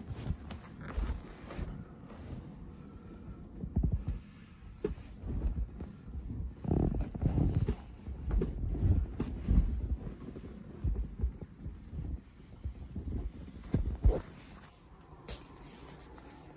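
Handling noise from a handheld camera: irregular low bumps and rustling as it is held and moved about.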